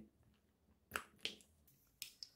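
Near quiet with two brief soft clicks about a second in, a third of a second apart.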